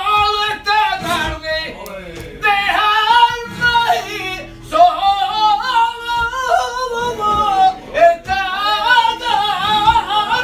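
Male flamenco singer's cante por soleá: long, wavering melismatic vocal lines over a Spanish flamenco guitar, with a few sharp strokes.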